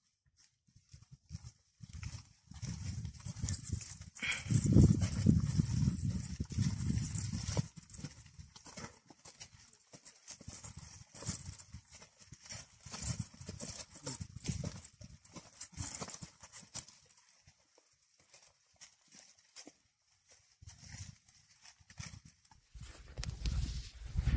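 Footsteps of several hikers crunching and scuffing on stone and gravel, an uneven run of clicks and knocks with a low rumble under them, loudest about four to eight seconds in and thinning out later.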